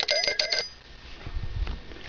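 A small brass hand bell shaken in rapid, continuous ringing that cuts off suddenly about half a second in, followed by faint low handling noise.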